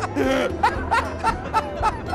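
People laughing hard: a steady run of short, rhythmic 'ha' pulses, about four a second, with a longer drawn-out laugh sound near the start.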